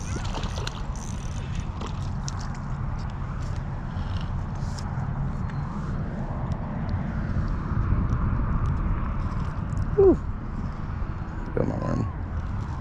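Steady low rumble of wind on an outdoor microphone, with faint scattered clicks of a fishing reel and rod being handled as a small largemouth bass is reeled in and lifted from a pond. A brief pitched vocal sound comes about ten seconds in.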